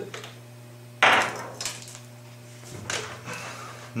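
A sudden knock and clatter on a wooden desk about a second in, followed by a few lighter handling sounds, over a steady low hum.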